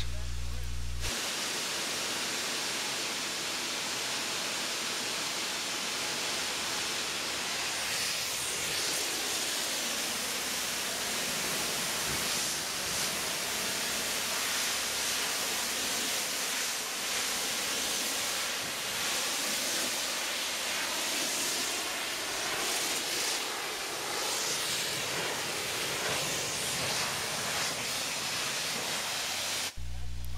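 Pressure-washer wand spraying a high-pressure water rinse onto a truck trailer's rear doors. It is a steady hiss that starts about a second in and swells and ebbs slightly as the spray is swept across the panels.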